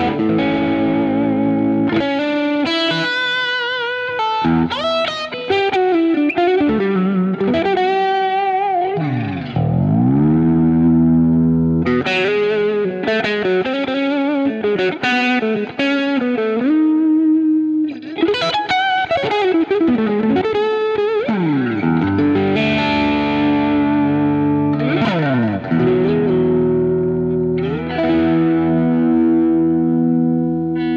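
Vola Luna electric guitar playing lead lines: fast note runs and bent, wavering notes, with a steep pitch dive that swoops back up about ten seconds in and again a little past twenty.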